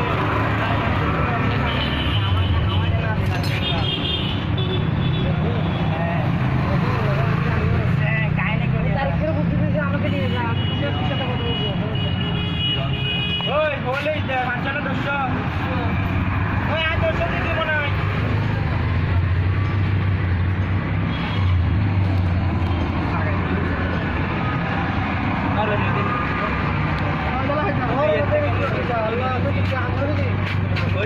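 Steady low engine rumble of road traffic with people talking over it.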